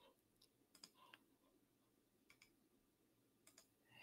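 Near silence, with a few very faint, scattered computer mouse clicks.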